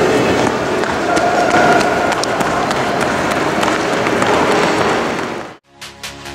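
Running footsteps on a hard stone floor with voices in a big, echoing hall, heard as a dense reverberant wash. Near the end the sound cuts off abruptly and music starts.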